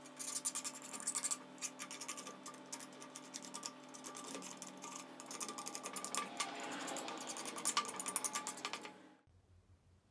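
Knife blade scraping blistered paint off a 1/32 diecast metal Renault 5 model body, in quick rasping strokes that stop abruptly about nine seconds in.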